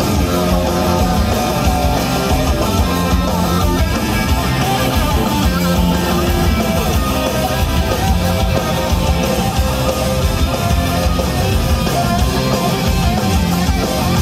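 A live rock band playing loud and steadily: electric guitar and bass guitar over drums with cymbals.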